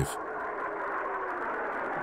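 Steady, dull rush of jet engine noise, muffled, with little high-pitched content.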